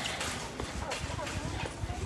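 Shopping cart rolling over a hard store floor, its wheels giving quick, irregular knocks and rattles, with faint voices in the background.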